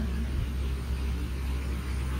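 Steady low electrical hum with faint hiss: the background noise of a poor-quality lecture recording.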